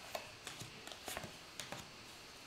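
Faint, scattered clicks and light taps of tarot cards being handled and laid out, about half a dozen in two seconds.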